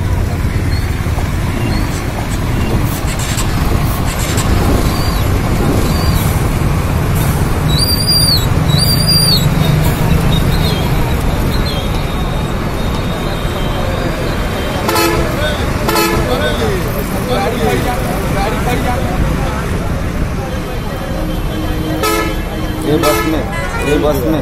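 Busy roadside traffic: vehicle engines running steadily, with short horn toots about fifteen and sixteen seconds in and two more near the end, over background voices.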